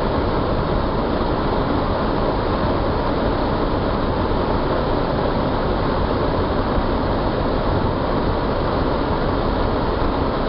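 4x4's engine and drivetrain running steadily, with tyre and track noise, heard from inside the cab while crawling along a rough lane.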